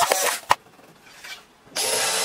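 Cordless drill driving screws into wood. A loud burst of a screw being driven cuts off with a sharp click about half a second in. After a quiet gap, another burst starts near the end.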